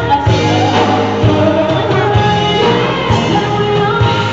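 Live band playing an R&B song: a woman sings lead into a microphone over a full band, with drum hits about once a second.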